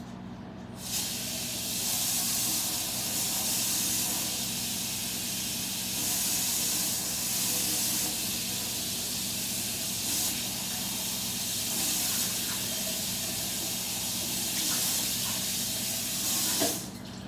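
Water running from a kitchen tap, a steady hiss that starts suddenly about a second in and swells slightly now and then, with a low steady hum underneath.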